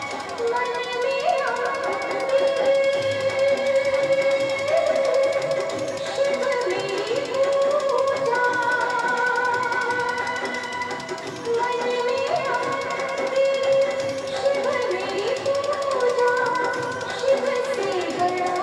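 Dance music: a held melody line that slides between notes, over instrumental accompaniment.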